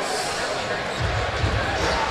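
A basketball being dribbled on a hardwood court, the low thumps of the bounces strongest in the second half, over the steady hubbub of an arena crowd.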